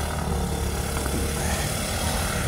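Steady low rumble of city street traffic, engines running at an intersection.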